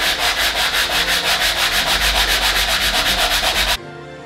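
Edge of a PVC foam board (Sintra) gauntlet piece being rubbed back and forth by hand on sandpaper laid flat on a cutting mat, to sand the edge flat. The quick, even strokes come about five a second and stop abruptly just before the end, where music comes in.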